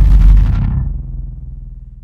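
Loud, deep, bass-heavy outro sound over an end screen, fading away over about a second and a half. The high end dies first, leaving a low rumble.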